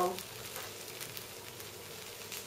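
Brandy burning on a flambéed Christmas pudding: a faint steady sizzle with small crackles.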